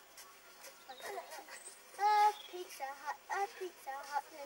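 Children's voices, quiet at first, then chattering, with one loud, held call about two seconds in.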